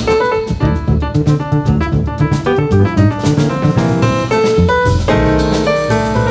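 Jazz piano trio playing: a grand piano carries the lead with quick runs and chords over double bass and drum kit. The piano thickens into fuller held chords near the end.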